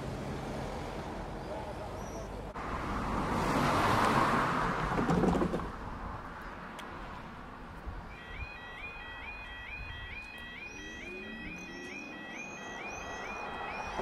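A car passes close by, loudest about four to five seconds in. From about eight seconds in, the level crossing's warbling two-tone 'yodel' warning alarm sounds, repeating about twice a second, signalling that the barriers are about to come down.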